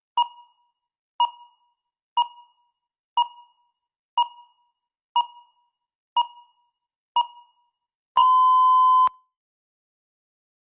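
Electronic countdown-timer beeps: a short beep once a second, eight times, then one longer steady beep lasting about a second, signalling that the speaking time has run out.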